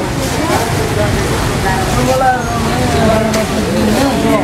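People talking over a steady low rushing noise from the flooded river in full spate.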